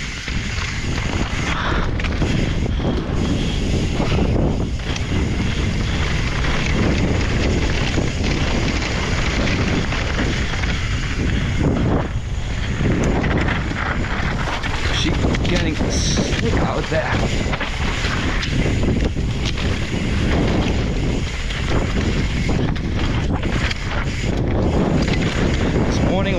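Wind buffeting the camera microphone over the continuous rumble and rattle of an enduro mountain bike's tyres and frame riding fast downhill over dirt, roots and loose gravel.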